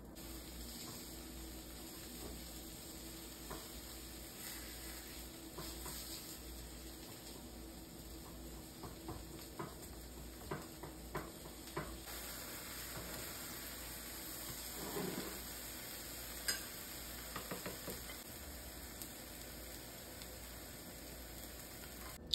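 Eggs sizzling faintly in a frying pan, with a spatula tapping and scraping against the pan several times in the middle.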